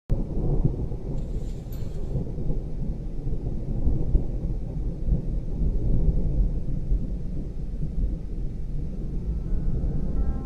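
Thunderstorm sound effect: a low, rolling rumble of thunder that starts suddenly and runs on unevenly.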